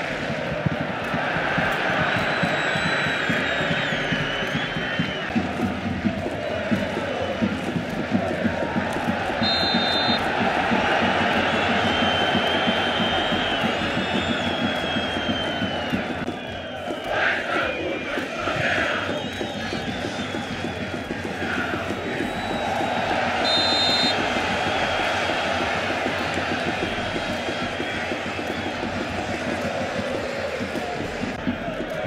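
Football stadium crowd chanting and singing steadily, with two short, high whistle blasts, one about ten seconds in and another near the middle of the second half of the stretch.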